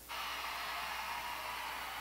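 A faint, steady hiss that starts suddenly just after the start and holds level throughout.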